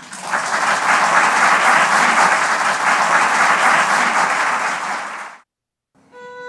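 Audience applauding, swelling up in the first second, then cutting off suddenly near the end.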